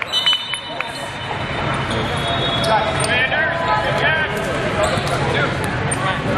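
The din of a large indoor volleyball tournament hall: many voices from across the courts, with scattered volleyball bounces and short squeaks of shoes on the sport court.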